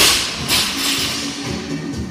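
Loaded barbell with bumper plates dropped from overhead onto the gym floor, a loud impact and a second one about half a second later as it bounces, over background rock music.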